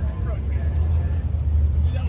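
A car engine running with a steady, deep low rumble, with faint voices behind it.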